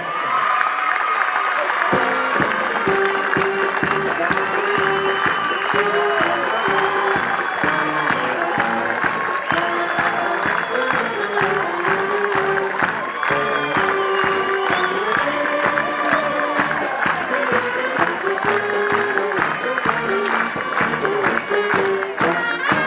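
Music with a clear melody playing while a crowd applauds steadily throughout.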